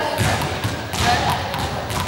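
Small juggling balls dropping and bouncing on a sports-hall floor: a series of thuds.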